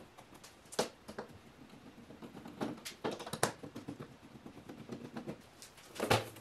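Scattered light clicks and taps as the plastic and metal cover parts of an xTool P2 laser cutter are handled and worked loose. There is a sharp click about a second in and a cluster of knocks around three seconds in.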